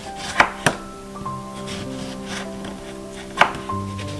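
Kitchen knife slicing a lemon and knocking on a wooden cutting board: two sharp knocks close together near the start and one more near the end.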